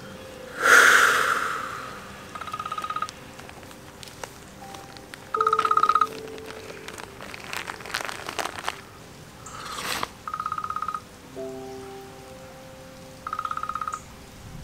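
A telephone ringtone trilling in four short bursts, each under a second, over soft held notes of background music. A loud breathy rush comes about a second in, and a fainter one shortly before the third ring.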